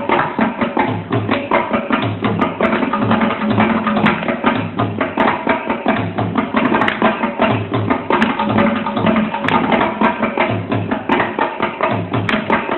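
Mridangam played in a fast, unbroken run of crisp strokes, with deep bass strokes on the left head coming about once or twice a second underneath.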